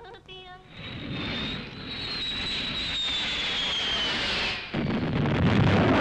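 Jet aircraft roaring in overhead, its high whine sliding down in pitch, then near the end a sudden loud bomb explosion whose roar carries on.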